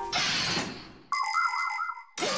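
A cartoon transition sting: a hissing whoosh that fades over about a second, then a short electronic ringing jingle with a warbling tone that cuts off suddenly as the logo card appears.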